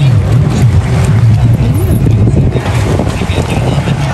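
Watercraft engine running steadily with a low, wavering drone, under a haze of water and wind noise.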